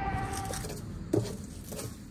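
A steel trowel working wet stucco mortar onto a wall over wire lath: soft scrapes and wet squishes, with one louder thud just over a second in. A steady hum fades out in the first second.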